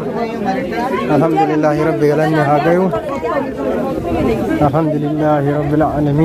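A crowd of voices talking and chanting, with a voice holding long steady notes, once for nearly two seconds about a second in and again near the end.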